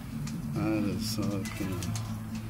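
Short, indistinct voice sounds, a few soft bending calls, over steady background music.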